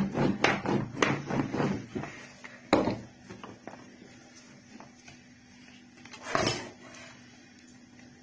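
Wooden rolling pin rolled over dough on a metal ravioli mould, knocking and clicking against it in a quick run during the first two seconds, then one sharp knock about three seconds in. A short scraping rush follows about six seconds in.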